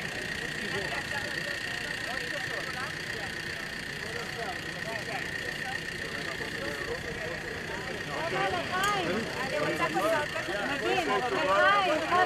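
Several people talking at once in a close group, the voices growing louder in the last few seconds, over a steady engine-like hum with a constant high whine.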